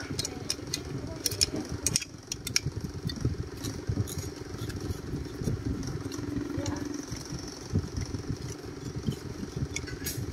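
A small engine running steadily at low speed, with a few sharp metallic clicks near the start.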